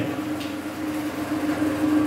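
A steady background hum holding one constant pitch over a faint hiss, with a light click about half a second in.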